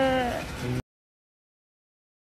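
A person's voice holding one long, slightly falling note, ending under half a second in; the sound track then cuts to dead silence.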